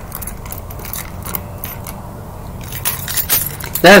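Scattered light clicks and rattles, bunched near the start and again about three seconds in, over a low steady hum.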